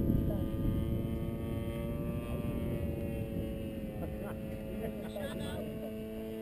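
Engine of a 2.6 m radio-controlled P-51 Mustang model idling steadily on the ground, with wind rumbling on the microphone.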